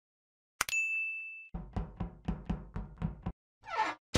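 Subscribe-button animation sound effects. A click with a ringing ding comes about half a second in, then a quick, even run of about eight low knocks, then a brief sweeping sound near the end.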